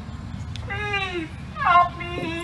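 A high-pitched human voice crying out twice in long, falling calls, the second shorter and louder, over a low steady crowd-and-outdoor background.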